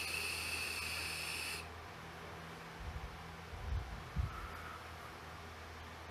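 Airflow hiss of a Smok TFV12 Prince sub-ohm vape tank as air is drawn through it on a hit, stopping about a second and a half in. A few soft, low puffs of breath follow.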